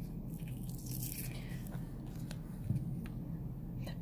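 Faint scattered clicks and a soft crinkle of a plastic blister pack being opened to get at a CR2032 coin-cell battery, over a steady low room hum.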